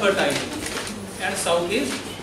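A man's voice speaking in a small room with some echo.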